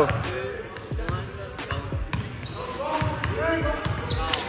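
A basketball bouncing repeatedly on a gym's hardwood floor, a short thud every half second to second, with voices chattering in the background.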